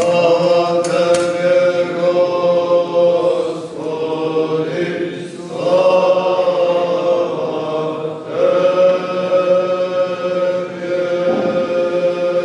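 Orthodox liturgical chant sung in long, held phrases, about four of them, with a short break between each and a steady low note sounding beneath.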